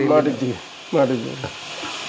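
A man speaking in short phrases, with pauses, over a steady background hiss.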